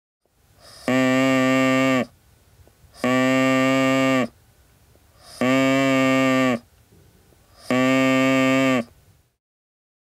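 Whistle-type artificial larynx blown by mouth on its own, without any vocal tract attached: four steady, rich buzzing tones about a second long each, all at the same low pitch. This is the bare sound source, with no vowel shaping.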